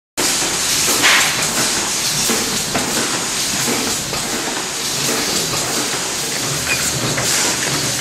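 Multi-lane tub-filling machine running on a production line: a steady hiss with scattered light clicks and clatter, cutting in abruptly just after the start.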